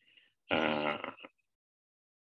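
A man's drawn-out hesitation sound, a low steady "uhh" of under a second, about half a second in, between sentences.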